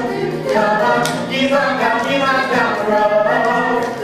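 A group of voices singing together in chorus, in phrases of about a second each, as in a stage-musical ensemble number.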